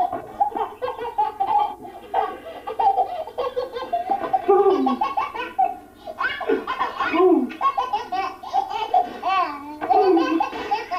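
Baby laughing hard in repeated bursts, with no let-up apart from a short lull about six seconds in.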